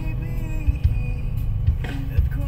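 Music playing inside a moving car, over the low rumble of the car's engine and road noise.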